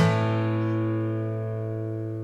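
A final chord strummed on an acoustic guitar, left ringing and slowly fading away at the end of the song.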